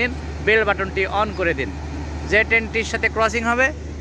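A man talking over the steady low rumble of a passenger train rolling past.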